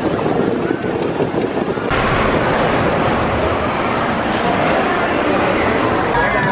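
Giant Dipper wooden roller coaster train running on its track: a steady rumbling roar that turns abruptly louder and brighter about two seconds in.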